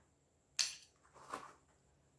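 A hand rummaging in a fabric shoulder bag of small finds, giving two short rustling clicks about three quarters of a second apart as a small object is pulled out.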